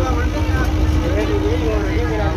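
Bus engine and road noise heard from inside the cab: a loud, steady low rumble with a constant drone, with people's voices over it.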